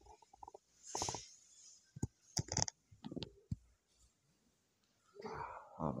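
Mostly quiet room with a few faint, short clicks and soft breathy noises in the first half, then near silence, then a man's voice starts near the end with 'Oh'.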